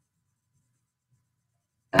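Near silence, then a sharp click and a woman's voice beginning to speak right at the end.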